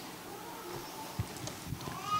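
Quiet hall room tone with a few soft knocks and clicks, about three in two seconds, from hands handling things on a wooden pulpit.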